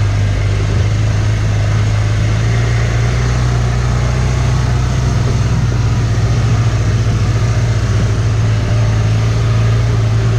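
Side-by-side utility vehicle's engine running at a steady pace while driving, a constant low drone that holds its pitch.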